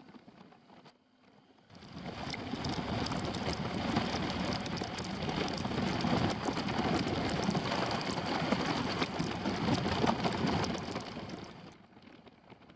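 Heavy rain and wet-road noise from a moving motorcycle, heard through a helmet camera, with many small drop impacts in a steady wash of noise. It fades in about two seconds in and fades out near the end.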